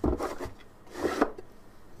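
A 3D-printed plastic drawer sliding into its slot in a small wooden box: plastic rubbing against wood in two short scrapes, one at the start and another about a second in.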